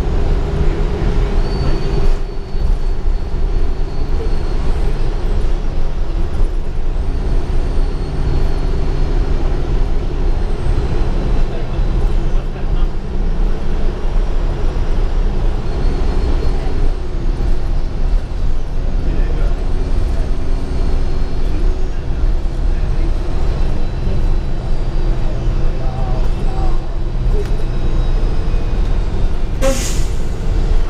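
Interior of a 2015 Gillig Advantage transit bus under way: a steady engine and drivetrain drone with road rumble, its pitch shifting as the bus speeds up and slows, and a faint high whine that comes and goes. A sharp knock sounds near the end.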